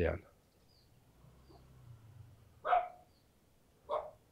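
Two short, sharp calls, the first about two-thirds of the way in and the second just before the end. Before that is the fading tail of a spoken word, over a quiet background with a faint low hum.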